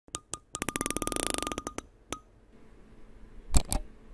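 Electronic intro sound effects for an animated logo: a few sharp clicks, then a fast run of beeping ticks lasting about a second and a half, then a faint rising hiss and two sharp hits about three and a half seconds in, the loudest part.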